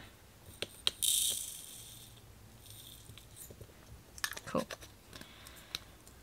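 Diamond-painting drills (small resin rhinestones) poured into a little plastic storage compartment: a short rattling hiss about a second in that fades away over a second or so, with a few light plastic clicks around it.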